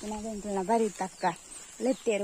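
A woman talking in Tulu, her speech broken by a pause of about a second in the middle.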